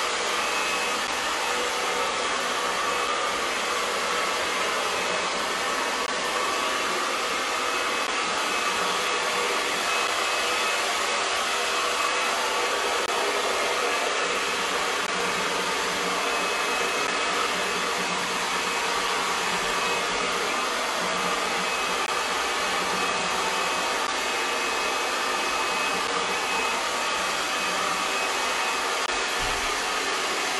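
Handheld blow dryer running steadily, blowing air onto a damp dog's coat.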